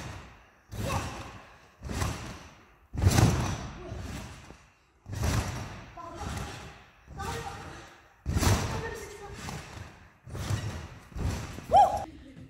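Trampoline beds thumping under repeated bounces, about one landing a second, each thud ringing out in a large hall.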